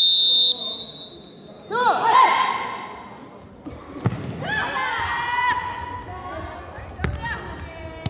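A referee's whistle blows one short blast to start the point, followed by players shouting calls. The jokgu ball is kicked in a serve with a sharp thud about four seconds in, and struck again with another thud near the end.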